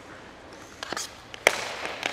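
A few sharp clacks of hockey sticks and pucks on ice, the loudest about one and a half seconds in.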